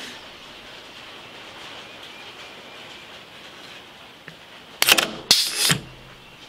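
Solenoid-valved Bimba single-acting air cylinder on a threading fixture cycling on about 30 PSI of shop air: two short, loud blasts of compressed air about half a second apart near the end as the cylinder fires and exhausts. Before them, a faint steady hiss.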